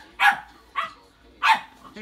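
Puppy barking: three short, sharp barks, a little over half a second apart.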